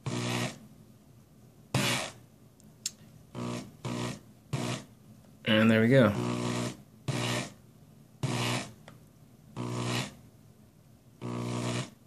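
A small electric motor run in short bursts, about ten in all, one of them longer near the middle, as the twisted coil wire is turned further to pull it into a triangular profile.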